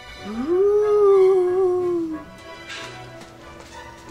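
A single howl sound effect that rises steeply, holds for about two seconds and trails down at the end, over quiet background music.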